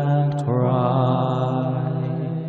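Unaccompanied hymn singing: the voices hold long notes near the end of a line, moving to a new note about half a second in.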